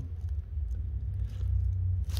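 A steady low rumble or hum.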